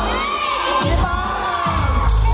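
A hip-hop dance track with a heavy bass beat, and an audience cheering and shouting over it.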